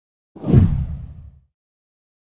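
A single whoosh sound effect with a deep low rumble under it. It swells about a third of a second in and fades away by about a second and a half.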